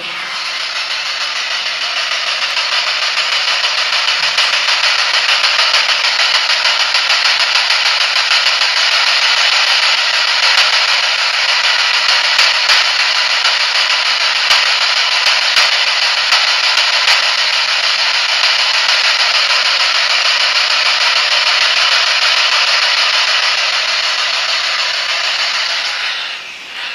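Handheld radio used as a ghost box, sweeping through stations: a steady, loud hiss of static with faint scattered clicks, growing louder over the first few seconds.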